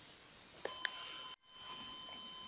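A steady high-pitched electronic whine with overtones starts with a click a little over half a second in and keeps going. About a second and a half in, all sound drops out for an instant, as at an edit. A couple of faint clicks sit around the start of the whine.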